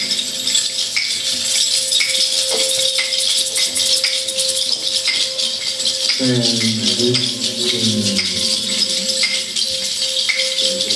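Hand percussion in a live free-jazz passage: a rattle or shaker is shaken continuously with regular accents, under a thin steady held tone. A little after halfway, a low voice slides downward in pitch for about two seconds.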